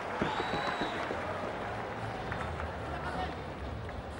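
Crowd in an indoor arena: many voices and shouts with some clapping, a few sharp claps in the first half-second.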